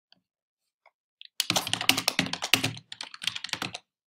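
Typing on a computer keyboard. A rapid run of keystrokes starts about a second and a half in, pauses briefly near three seconds, then a second, shorter run follows.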